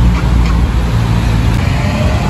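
Steady low rumble of a motor vehicle's engine on the road close by, with traffic noise.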